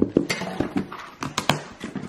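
Handling of a plastic-wrapped box in its cardboard carton: a series of sharp taps and crinkles, several close together around the middle.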